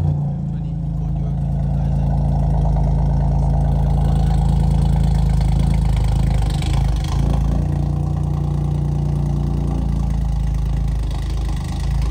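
Decatted BMW F20 118i running through a dual exhaust with four-inch carbon tips, a steady low drone at around idle. The note wavers briefly a little past halfway and again near the end.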